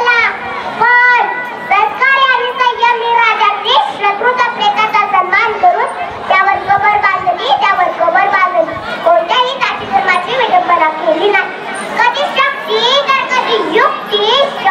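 Only speech: a young girl's high-pitched voice delivering an animated speech into a handheld microphone, almost without pause.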